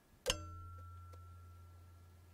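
A basketball free throw striking the steel rim with a sharp clang about a third of a second in, the rim ringing on and slowly fading afterwards; the shot drops in for a made basket.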